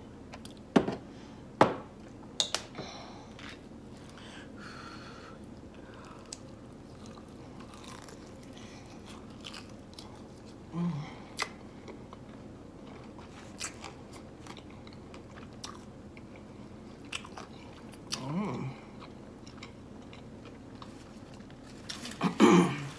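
Close-up eating sounds: a piece of Popeyes spicy fried chicken is bitten into and chewed, the crispy breading crackling faintly. There are a few sharp taps in the first couple of seconds as hot sauce is shaken from its bottle.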